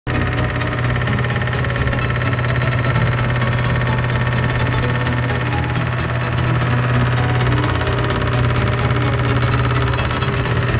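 A small 775-type DC motor running at a steady speed, spinning a homemade magnet-and-coil generator rig: a continuous low hum with a buzz above it.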